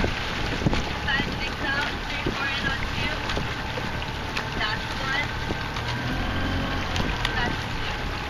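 Steady low running of a small motorboat engine with wind on the microphone, and faint voices carrying across the water from the rowing eight.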